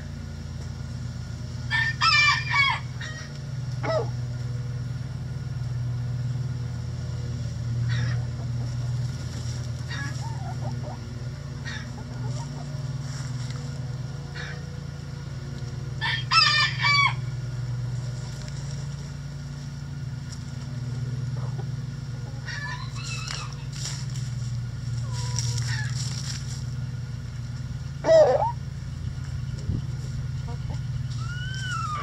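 A rooster crowing twice, about fourteen seconds apart, each crow a loud multi-part call lasting about a second. Between the crows, shorter softer calls come from the hens of the flock, over a steady low hum.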